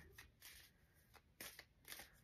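Faint, brief rustles and soft clicks of tarot cards being handled, five or six short strokes scattered through the two seconds.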